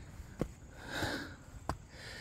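A climber's heavy breathing on a steep stair climb, one loud breath about a second in, with two footfalls on the steps.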